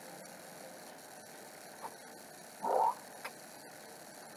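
Sound effects from a cartoon animation playing on a laptop, heard through its small speakers: a few faint blips and one short burst a little past halfway, the loudest thing, over a faint steady hiss.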